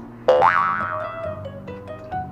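A cartoon-style comedy sound effect about a third of a second in: a sudden quick sweep up in pitch that rings on and fades over about a second, over steady background music.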